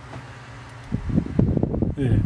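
Handling noise close to the microphone: a loud, irregular crackling rumble that sets in about a second in, over a faint steady hum.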